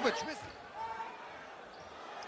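A basketball bouncing on the hardwood court over the low, steady noise of the arena crowd.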